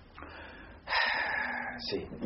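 A man drawing a loud, breathy breath close to the microphone, lasting about a second from just before the middle, after a fainter breath.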